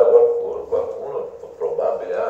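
A man's voice speaking, with a long held vowel at the start.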